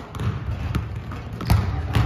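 Several basketballs bouncing on a hardwood gym floor: irregular thuds from more than one ball, the loudest about one and a half seconds in.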